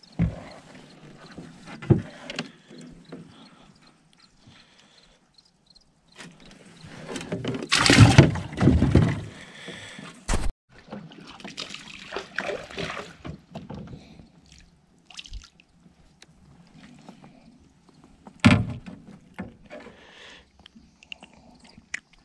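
Water sloshing and splashing around a kayak while a caught fish is handled, with knocks against the hull. The loudest splashing comes about eight seconds in, followed by a sharp knock, and there is another loud burst near the end.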